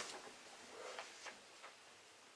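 Faint paper rustle of a book page being turned by hand, with a few soft ticks about a second in.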